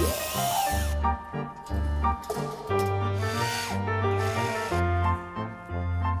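Background music with a steady bass pulse, over which a cordless drill runs in several short bursts, whirring up as it drives screws to fix an enamel panel to a wall.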